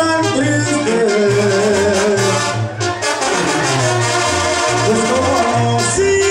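Live Mexican banda playing: a brass section of trumpets and trombones holding melody notes over a low brass bass line that steps from note to note, with a brief dip in loudness about halfway through.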